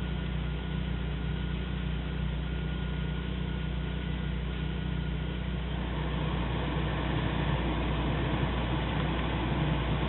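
BMW E36's M43 four-cylinder engine idling steadily, heard from inside the cabin along with the climate-control blower fan. About six seconds in, the blower's rushing air grows louder as the fan speed is turned up.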